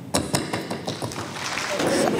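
Scattered, irregular hand clapping from a small group, heard as a loose patter of separate claps.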